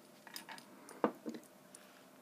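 A few light clicks and taps of small makeup tools and containers being handled, the loudest about a second in.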